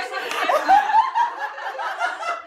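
A group of girls laughing together, several voices overlapping, mixed with a little talk.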